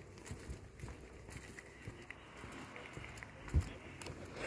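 Footsteps on concrete paving slabs, faint and irregular, under the low rumble of a phone being carried while walking. A single louder thump comes about three and a half seconds in.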